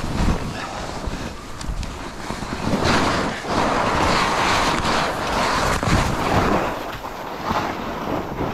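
Skis sliding through deep powder snow, a steady hiss that grows louder about three seconds in, with wind rushing over the microphone.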